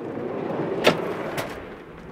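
Heavy-duty slide-out drawer rolling out of a van's rear cargo floor on its runners, with two short clicks along the way. The rolling sound eases off toward the end.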